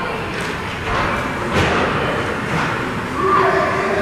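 Ice hockey play in a rink: a few sharp knocks of sticks and puck against the ice and boards, the loudest a little before the middle, followed by voices calling out near the end.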